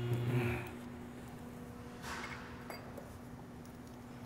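Quiet workshop room tone with a steady faint hum and a few light handling noises as a water pump is set against the engine.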